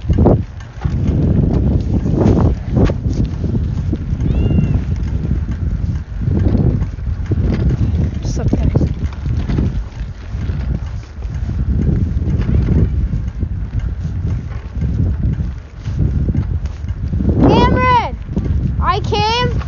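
Wind and handling rumble on a phone microphone carried along outdoors, rising and falling unevenly, with a few sharp knocks in the first few seconds. A short call of a voice comes just before the end.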